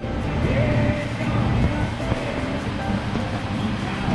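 Moving air buffeting the microphone in a low, uneven rumble, from the large wall-mounted fans blowing across the table. Faint background music and voices sit underneath.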